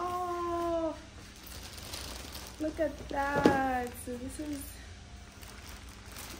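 A woman's wordless excited vocal sounds, a drawn-out "ooh" at the start and more short "ooh"/"aww" sounds a few seconds in, with light rustling of packaging and one sharp click from the box.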